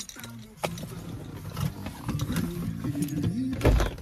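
Handling noise inside a car: a sharp click about half a second in, a low muffled voice, and a heavy thump near the end.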